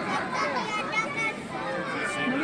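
Crowd of children and adults chattering and calling out at once, many overlapping voices with no single speaker standing out.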